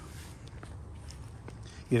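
Faint footsteps on dry, dormant lawn grass.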